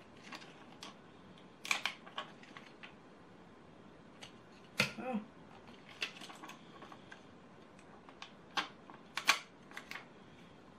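Small irregular clicks and taps of a plastic pick tool lifting tiny adhesive gems off their sheet and pressing them onto a paper card, with a few sharper clicks in short clusters.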